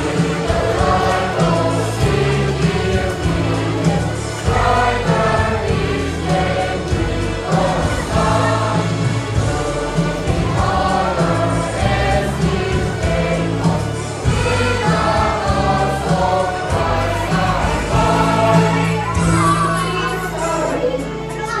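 A school choir of boys' and girls' voices singing a song together, with an instrumental accompaniment carrying a bass line beneath.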